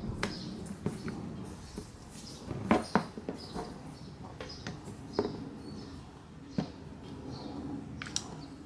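Hand-held PVC pipe cutter squeezed onto the stiff plastic frame of a GoPro Media Mod: a series of irregular sharp clicks and creaks as the blade bites into the tough plastic, the loudest pair about three seconds in.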